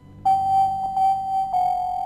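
Television station ident music: a run of sustained electronic keyboard notes at nearly one pitch, struck about four times, the later ones a little lower. It starts a moment after the previous music cuts off.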